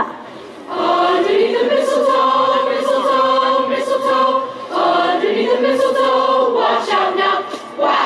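Children's choir singing together in two long phrases: each swoops up in pitch, holds the note, then slides back down.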